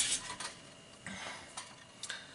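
Faint handling sounds, a few light clicks and rustles, as a Tortoise switch machine is picked up and brought into place.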